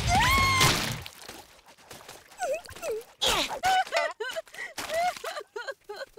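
A short music cue with a rising vocal cry, ending about a second in. Then a cartoon girl's scattered short, wordless groans and whimpers with quiet gaps between them.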